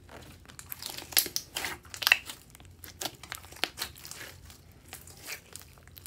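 Glossy bead-studded slime being squeezed and pressed by hand, giving a dense run of irregular sticky pops and crackles, loudest about one to two seconds in and thinning out later.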